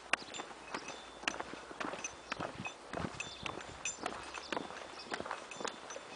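Footsteps of people walking on an asphalt road, sharp steps at about two a second, with faint high clinks between them.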